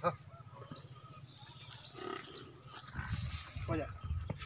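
Nili-Ravi water buffalo making low, quiet calls, stronger in the second half.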